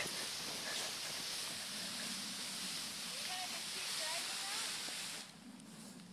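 Cut Christmas tree dragged across wet grass and fallen leaves, its branches giving a steady rustling, scraping hiss that stops about five seconds in.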